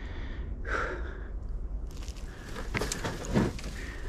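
Footsteps crunching over dry leaves, pine needles and twigs, with a couple of distinct crunches in the second half.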